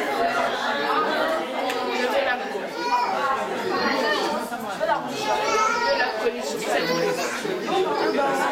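Crowd chatter: many people talking at once in a large hall, with their voices overlapping steadily.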